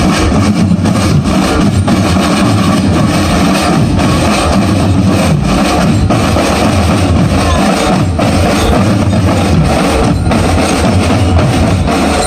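Marching drum band playing, with massed bass drums beating continuously under the band.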